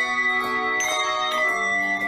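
Bells ringing a slow melody, a new note struck about every half second while the earlier ones ring on under it.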